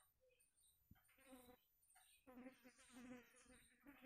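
Near silence: faint room tone with a few very quiet, indistinct murmurs in the middle.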